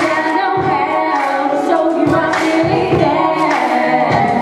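A young woman singing into a handheld microphone over backing music with a recurring low beat.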